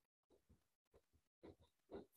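Near silence: the audio of an online video call drops out while a participant's connection is frozen, leaving only a couple of very faint, brief sounds near the end.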